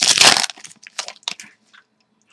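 The plastic wrapper of a hockey card pack crinkling as the pack is torn open and handled: a loud burst of crackling at the start, then scattered fainter crinkles that die away about a second and a half in.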